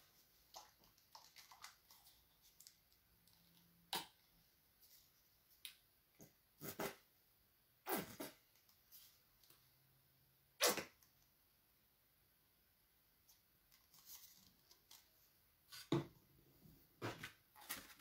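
Faint scattered clicks and knocks with near silence between them, from white paint being put out onto a paper plate and the plate being handled. The loudest knocks come about 4, 8 and 11 seconds in.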